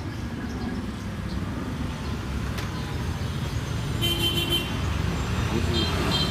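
Steady road traffic noise, a low rumble of passing vehicles, with a short vehicle horn toot about four seconds in.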